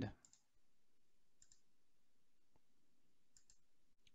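Near silence, with a few faint, sharp computer-mouse clicks spaced out across it.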